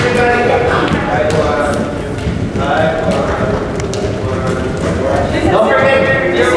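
A group of people talking over one another in a large hall, with a few short sharp taps among the chatter.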